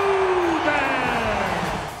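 Arena public-address announcer drawing out a player's name in one long held call that slides down in pitch and trails off, echoing over crowd noise.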